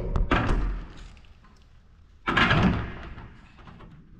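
Paper being pulled and torn off a freshly painted surface: two rough rustling spells of about a second each, the second starting just after two seconds in, with a few knocks in the first.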